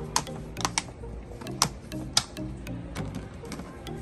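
Sharp, irregular plastic clicks and knocks, about half a dozen, as a plastic wheel is handled and pushed onto a kids' ride-on car's axle, over background music.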